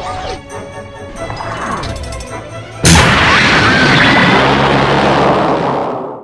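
Dramatic soundtrack music, then about halfway through a sudden, loud explosion sound effect that keeps rumbling for about three seconds.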